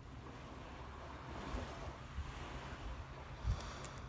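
Wind buffeting the microphone outdoors, a low uneven rumble over a steady rushing hiss, with a stronger buffet near the end.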